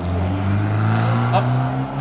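A car engine running steadily at idle, its low hum rising slightly in pitch, with a brief spoken 'ah' over it.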